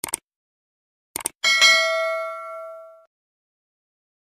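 Subscribe-and-bell sound effect: a quick double click, two more clicks a second later, then a single bright bell ding that rings out and fades over about a second and a half.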